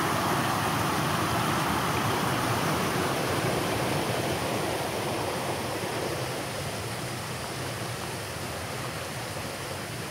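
Spring water of the Bosna river rushing over a low stepped weir, a steady rushing sound. It grows gradually fainter after about four seconds and gives way to the softer flow of a shallow stream over stones.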